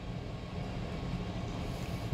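Steady low background rumble with no distinct events, the low hum of the room between spoken phrases.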